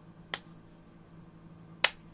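Two sharp clicks about a second and a half apart, the second one louder.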